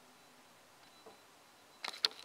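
Near silence with faint room tone, broken near the end by a few sharp, short clicks.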